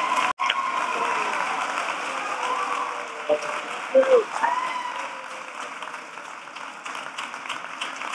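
Audience applauding, slowly dying down.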